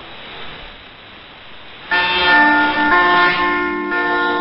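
Station music heard through a shortwave radio receiver, with thin, band-limited sound and background hiss. A soft passage gives way, about two seconds in, to a sudden loud held chord of several sustained tones.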